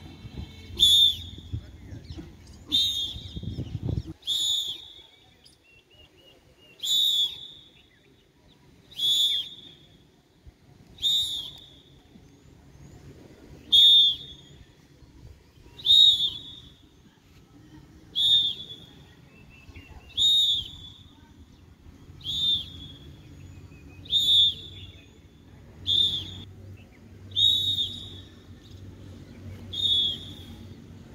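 Short, loud whistle blasts, one about every two seconds, keeping a steady beat. A low rumble runs under the first four seconds.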